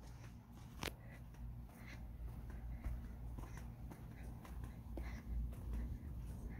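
Quiet outdoor background with a low rumble of wind and handling on the phone's microphone, a small click about a second in, and faint footsteps scuffing on a concrete path at a slow walking pace.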